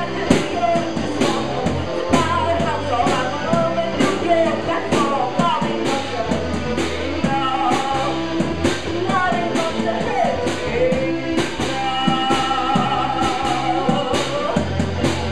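A live rock band playing: a drum kit keeping a steady beat under electric guitars, with a voice singing the melody over them.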